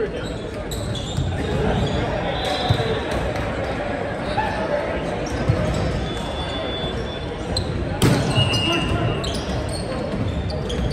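Busy gymnasium din during an indoor volleyball match: many voices talking and calling, sneakers squeaking on the hardwood floor, and balls bouncing. A few sharp thuds stand out, the loudest about eight seconds in.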